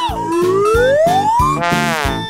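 Background music with a steady beat, over which a comic sound effect whistles upward in pitch for about a second and a half, then gives a short buzzy tone near the end.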